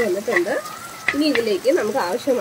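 Masala sizzling as it fries in oil while being stirred with a steel ladle. A person's voice sounds over it, pausing briefly in the middle.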